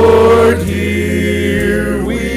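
A mixed group of six voices, three men and three women, singing a sacred song in harmony through handheld microphones. The singing comes in loud on a held chord at the start, then carries on a little softer.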